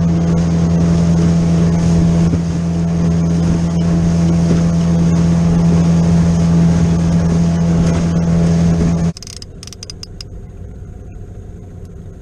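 Small boat's outboard motor running at a steady cruising speed, with water and wind rush from the hull under way. It stops abruptly about nine seconds in, leaving a much quieter wash of water and a few sharp clicks.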